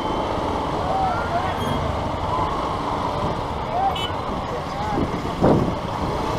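Vehicles idling in a stopped traffic jam: a steady low engine noise, with faint voices of a crowd behind it and a couple of brief louder bursts near the end.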